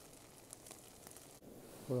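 Faint sizzle of chicken biryani frying in a camp frying pan, with a few small ticks. It breaks off abruptly about one and a half seconds in, and a man's voice begins just before the end.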